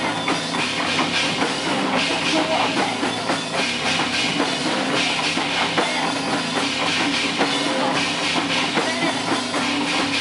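Doom/sludge metal band playing an instrumental passage live: bass guitar and drum kit with steady drum hits and no singing.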